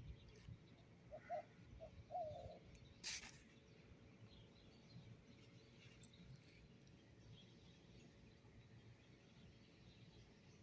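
Near silence: faint outdoor ambience, with a few faint short chirps about one and two seconds in and a brief rustle about three seconds in.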